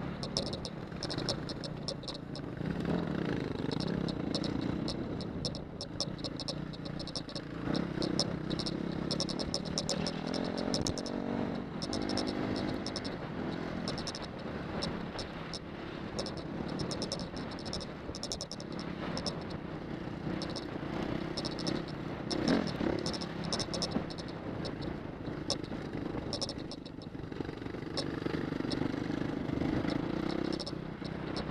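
Off-road motorcycle engine running while riding a dirt track, its pitch rising and falling with the throttle, with frequent rattles and clicks from the bike over rough ground.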